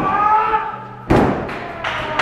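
A wrestler's body hitting the wrestling ring's mat: one loud thud about a second in, with a short echo after it.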